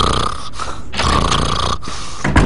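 Cartoon old man snoring: two long, rough snores in a row, about a second each.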